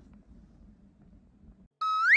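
Faint low room tone, then near the end a sudden loud electronic beep-like tone with a bright ring that begins to slide upward in pitch: an edited transition sound effect.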